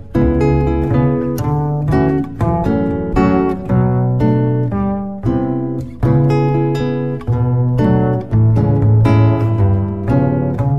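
Instrumental passage of a Hungarian folk song in a world-music arrangement: plucked strings pick out a quick, steady run of notes over held low notes, with no singing.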